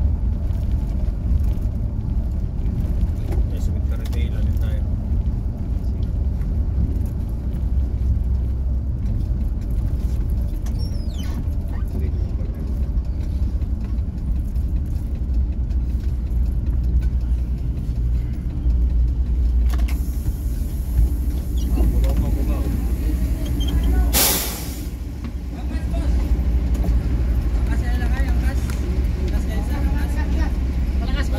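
Passenger bus heard from inside the cabin: a steady low engine and road rumble, broken about three-quarters of the way through by one short, loud hiss of the air brakes, after which the engine noise drops for a moment as the bus comes to a stop.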